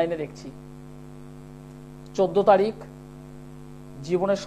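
A steady electrical mains hum runs under the programme sound. A man's voice breaks in briefly at the very start and again about two seconds in.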